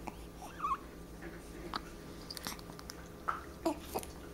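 Baby's small mouth sounds: a brief squeaky coo about half a second in, then a few faint lip smacks and clicks.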